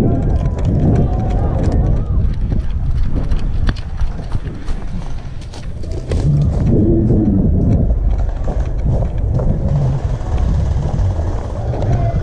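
Footsteps of someone running over grass and dirt, with many irregular clicks and thuds from jostled gear and a heavy rumble of movement on the body-worn camera's microphone. Indistinct voices come in briefly near the start and about halfway through.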